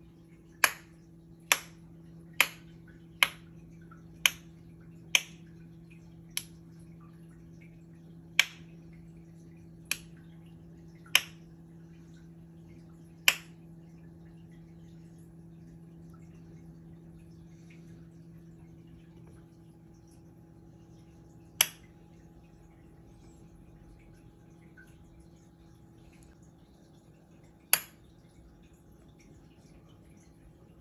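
Mantis shrimp striking a crab with its clubs: sharp single clicks, about one a second at first, then only twice more, far apart, over a steady low hum.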